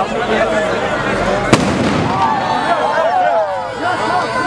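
A single sharp firework bang about a second and a half in, over a crowd's chatter.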